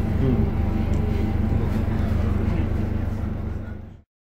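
Steady low rumble of a coach bus's engine and road noise inside the passenger cabin, with faint voices. It fades out near the end.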